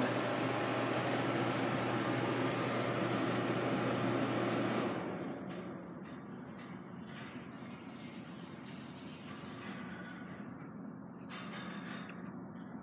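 A steady indoor machine hum with an even hiss, like ventilation or air-handling equipment, which drops away about five seconds in, leaving a quieter room with a few faint clicks.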